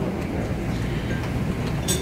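Steady low rumble of room noise picked up by the lectern microphone, with a few faint ticks.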